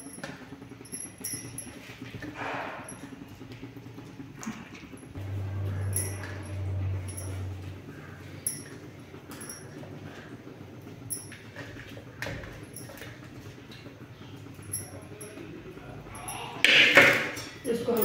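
Fried potato and okra pieces dropped by hand into a steel kadhai of simmering gravy: scattered small clinks and plops, with a louder clatter near the end.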